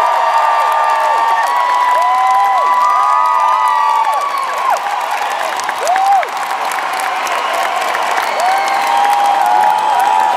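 Large arena crowd cheering and screaming, with clapping throughout; many high voices rise and fall over one another.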